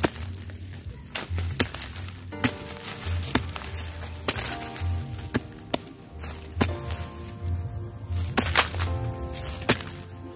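A small hooked metal hand tool chopping and scraping into packed soil to dig out a caladium tuber: about a dozen sharp strikes at irregular intervals. Background music with a low steady beat runs underneath.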